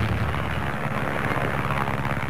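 Propeller aircraft engines droning steadily as a plane flies past low after take-off.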